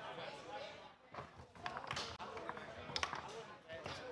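Foosball table in play: several sharp clacks of the hard ball being struck by the rod men and hitting the table, the loudest about three seconds in, over background chatter.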